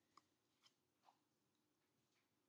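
Near silence, with three faint, short rustles of a wet paper filter cone being unfolded by gloved hands.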